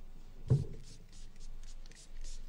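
Handling noise at a lectern microphone: one dull thump about half a second in, then soft rustling and shuffling.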